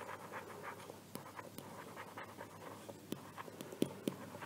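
Faint scratching strokes of a stylus handwriting words, with a few light taps in between.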